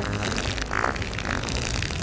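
Comedic fart sound effect, a low, rough, rapidly pulsing sound, played over background music as the punchline to "I have gas".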